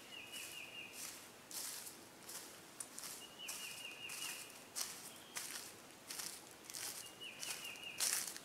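Footsteps crunching through dry leaf litter, about one and a half steps a second. A bird gives a short high trill at one steady pitch three times, a few seconds apart.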